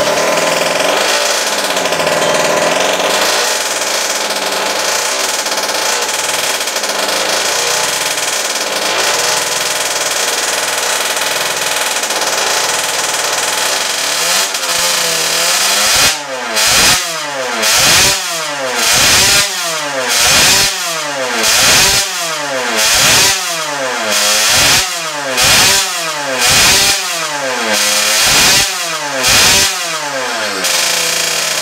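Small two-stroke engine running on the 'super mellow' expansion pipe, unevenly at first, then blipped up and back down about a dozen times, roughly once a second, in the second half. On this pipe it is running somewhat, where with other pipes it would not start at all; the owner thinks the plug is fouled.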